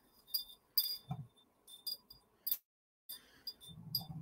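Metal tubes of a wind chime striking each other lightly: a scattering of faint clinks, each with a short high ring, and a soft thump or two.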